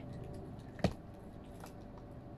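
Quiet, faint rustling and light ticks of a hand feeling a small object inside a cardboard box, with one short sharp sound a little under a second in.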